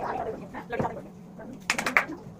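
Indistinct voices, with a quick run of sharp knocks near the end.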